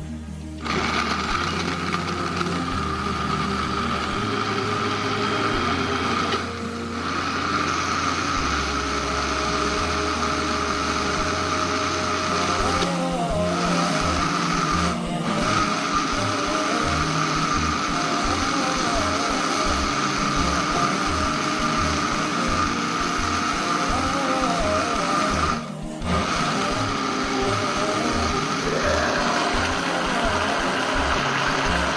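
Electric countertop blender switching on within the first second and running steadily with a motor whine, blending fruit pulp and sugar into juice. Background music with a beat plays under it.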